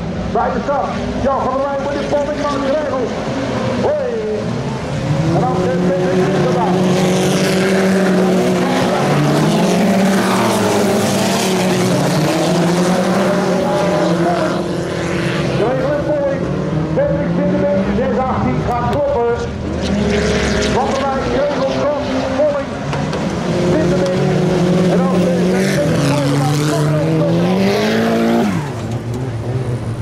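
Engines of several autocross race cars running hard together on a dirt track. Their pitch repeatedly climbs, then drops at each gear change.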